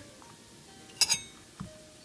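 A single sharp metallic clink about a second in, with a brief high ring, as the two halves of a bronze spoon mold knock together while being handled; a fainter tick follows soon after.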